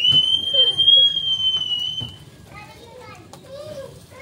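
A child's long, high-pitched shriek that rises and is then held for about two seconds, followed by children's voices.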